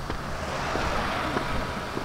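A road bicycle passing close by: a rush of tyre whir that swells to a peak about a second in, then fades as it rides away.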